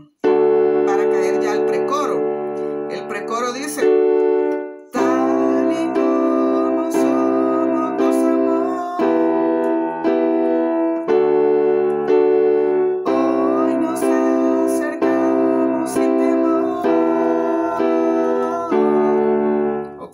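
Digital keyboard playing block chords in a slow, steady pulse, each chord held a second or two before the next, with bass and chord struck together. A faint wavering higher line sits above the chords in places.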